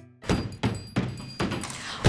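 Music: four soft, evenly spaced percussive thuds, just under three a second, beginning after a brief gap.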